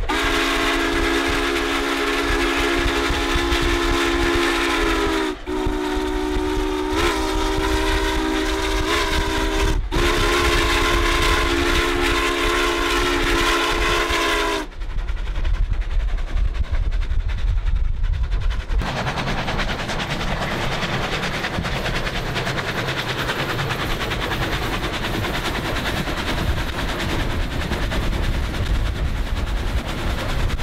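Steam locomotive whistle of Union Pacific 844 sounding a chord of several tones in three long blasts, the second with small bends in pitch. After the blasts, a steady rushing rumble of the running train continues.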